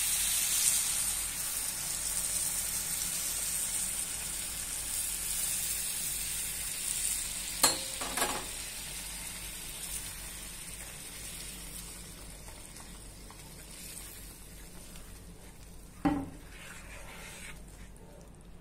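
Boiled water poured into a hot pan of ghee-roasted semolina (rava) and sugar, hissing and sizzling loudly the instant it goes in, then bubbling down gradually while it is stirred. Two sharp knocks against the pan, about eight seconds in and near the end.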